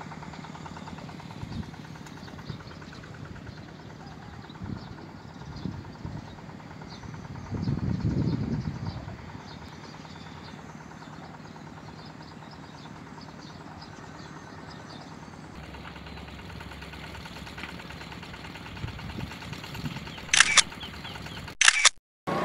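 Steady open-air background noise with faint, high chirps scattered through it, and a brief low rumble of wind on the microphone about eight seconds in.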